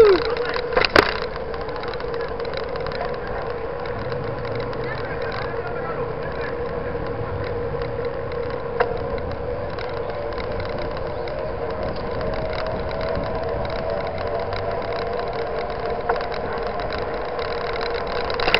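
Steady rolling noise of a 29er mountain bike riding on asphalt, picked up by a camera on the bike: an even hiss with a constant hum, broken by a few sharp clicks.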